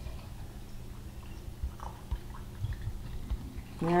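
Broth poured from a silicone measuring cup through a canning funnel into a glass quart jar, heard faintly with a few soft, brief sounds over a low steady hum.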